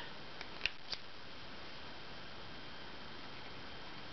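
A brush pen being picked up and handled: a few light clicks within the first second, then a faint steady hiss.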